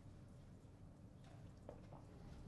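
Near silence: quiet room tone with a few faint light ticks of a pen on paper as it is put to a test sheet.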